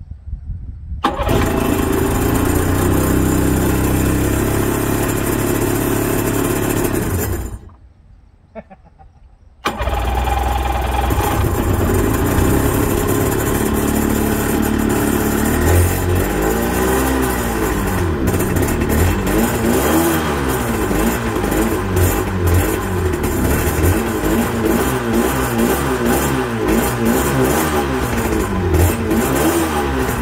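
1992 Sea-Doo GTS jet ski's two-stroke engine starting about a second in and running for about six seconds, then cutting out. It restarts about two seconds later and runs on, its speed rising and falling unevenly, while it is fogged: fogging oil is sprayed down the carburetor with the engine running.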